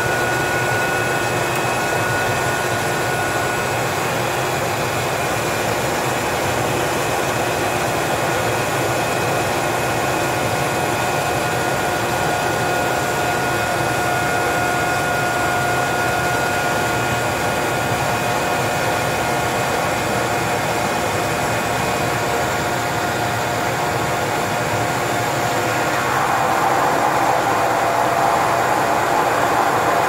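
GE H80 turboprop engine of a DHC-3 Otter seaplane running steadily, heard from inside the cockpit, with a steady whine over the engine and propeller noise. It gets a little louder near the end.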